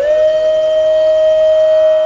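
Flute music on the soundtrack: one long held note over a quieter steady drone.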